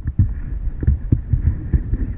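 Dirt bike engine running roughly at low revs, a string of uneven low thumps.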